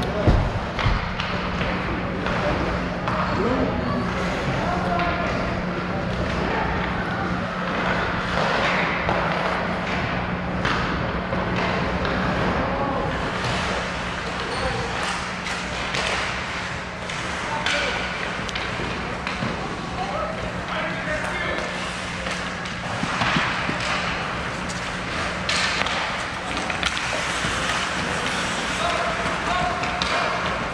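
Ice hockey play in an indoor rink: skate blades scraping the ice and sticks and puck clacking, with indistinct shouts from players and spectators over a steady low hum. A loud knock sounds just after the start.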